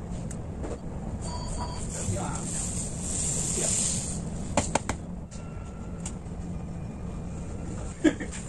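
Granulated sugar poured from a plastic container into a stainless steel pot: a soft, steady hiss for about a second and a half, then a few sharp taps on the metal about a second later. A low steady hum underlies it.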